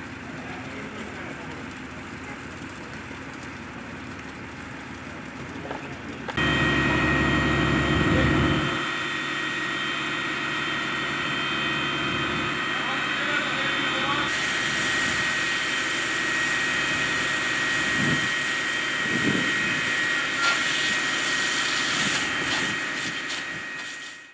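Fire engine's engine and pump running steadily: a constant drone with a steady high whine. About six seconds in it becomes abruptly louder, with a deep rumble for about two seconds.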